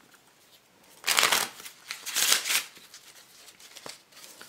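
A deck of Bicycle playing cards being shuffled by hand: two short bursts of riffling about a second apart.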